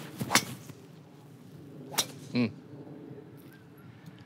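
A golfer's full swing with a Titleist TSR3 driver: a quick swish followed by a sharp crack as the clubhead strikes the ball. A second, slightly quieter sharp crack comes about two seconds later.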